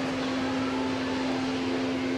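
A steady hum: one constant tone over an even hiss, unchanging throughout.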